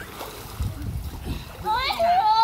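Pool water splashing as a man lifts a toddler up out of the water. Near the end a child's high-pitched voice rises in pitch.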